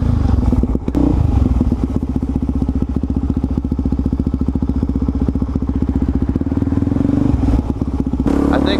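Single-cylinder four-stroke engine of a Suzuki DR-Z400SM supermoto running under throttle at steady revs, heard from the rider's helmet, with a thump about a second in; the note changes near the end.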